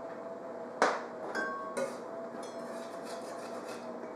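A few light clinks and taps of metal kitchen tools on a countertop: a sharp tap about a second in, then two more shortly after, one with a brief metallic ring, as a metal decorating tip cuts holes in rolled shortbread dough and a spatula lifts the cut rounds.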